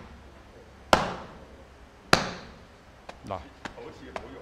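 Two sharp open-palm slaps down onto a cloth sandbag resting on a wooden stool, about a second apart, each with a short decay, in the manner of iron-sand palm striking. A few lighter taps follow near the end.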